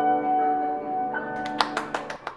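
Grand piano's final chord ringing out and slowly fading, with a higher note joining about a second in. Near the end, a quick, uneven run of hand claps starts.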